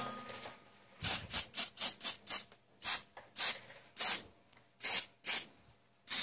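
Aerosol can of anti-corrosion spray fired in short bursts, a quick run of about seven in a second and a half, then five more spaced apart. Rustproofing being sprayed into a car's wheel arch.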